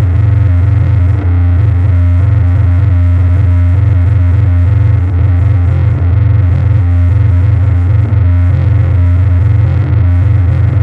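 Electric bass sound fed through a pedalboard of effects, held as a loud, steady low drone with a shifting, distorted noise texture on top.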